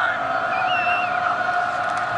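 Stadium crowd noise, with a couple of steady held tones and a higher wavering tone over it.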